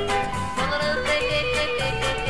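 Yodeling in a comic country-western song, the voice leaping between notes over band accompaniment with a steady alternating bass beat.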